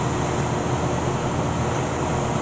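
Steady workshop background: an even mechanical hum and rushing noise, with no separate knocks or clinks.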